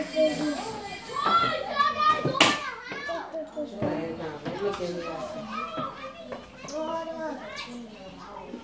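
Young children's voices: chatter, calls and squeals, with a couple of sharp knocks, the loudest about two and a half seconds in.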